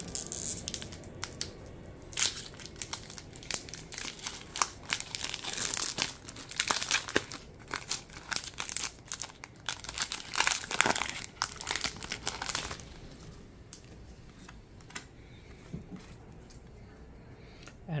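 Pokémon booster pack's foil wrapper crinkling and tearing as it is worked open, a dense run of sharp crackles for about thirteen seconds, then only faint handling.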